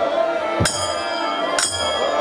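Kirtan ensemble playing: harmonium and violin holding a sustained tone over soft khol drum beats, with two sharp, ringing metallic cymbal clashes about a second apart.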